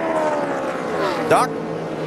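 Several NASCAR stock-car V8 engines running together at high revs, their pitch sliding slowly downward. A single spoken word is heard about a second in.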